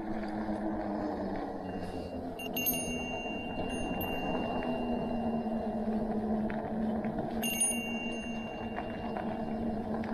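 Steady rolling drone of fat bicycle tyres on pavement, with a low hum, as the e-bike coasts without motor assist. A bicycle bell rings twice, about two and a half seconds in and again near eight seconds, each ring fading out over a second or two as a warning to pedestrians ahead.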